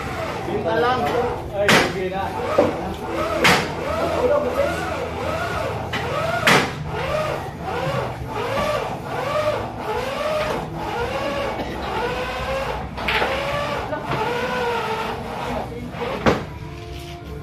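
Billiard balls clacking sharply about five times, spread out at irregular intervals, over a steady background voice whose pitch rises and falls.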